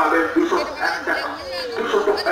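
People talking, with chuckling mixed in.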